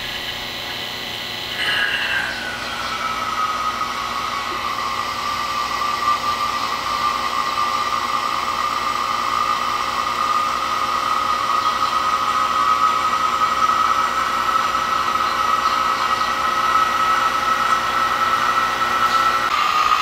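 Electric A/C vacuum pump running steadily with a high whine, evacuating a car's air-conditioning system through a manifold gauge set to draw out air and moisture. About two seconds in, its pitch drops and settles into a lower steady tone.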